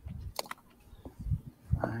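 Dull thuds about twice a second from a handheld phone's microphone as its holder walks, with one sharp click about half a second in; a man starts speaking near the end.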